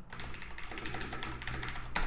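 Computer keyboard typing a short line of text: a quick, even run of key clicks.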